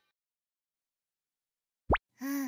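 Near silence, then just before the end a short cartoon sound effect: one quick upward sweep in pitch.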